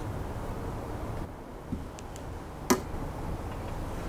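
A digital scale and a phone being handled and set down on a steel table: a few faint taps, then one sharp click about two-thirds through, over low room noise.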